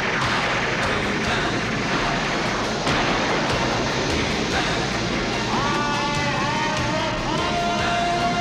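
Cartoon magic-transformation sound effect: a loud, dense rushing crackle of magical lightning under dramatic orchestral music. From about five and a half seconds in, a series of swooping musical notes rises over it and ends on a held note.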